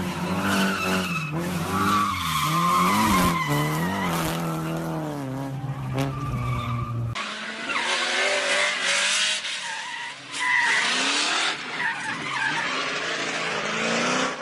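Car engine revving up and down with tyres squealing as a car drifts. About seven seconds in the sound cuts to a second drift car, its tyres skidding and squealing in a noisy rush as it slides on the track.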